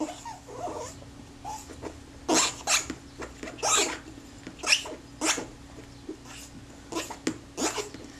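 Cotton swab scrubbing dried, lacquer-like grease out of the grooves of an aluminium camera lens mount: a series of short, irregular scratchy rubbing strokes over a faint steady hum.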